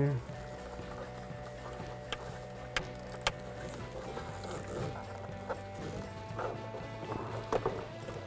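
Soft background music with a few sharp plastic clicks as an electrical connector is worked into the back of the overhead dome light housing, the loudest clicks close together around the middle.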